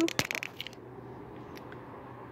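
A few soft clicks and crunches in the first half-second, then a faint steady low hum.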